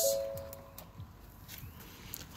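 Electronic warning chime from a 2015 Ford Edge's dashboard: a single steady two-note tone that fades out after just under a second, following a sharp click. Faint ticks follow.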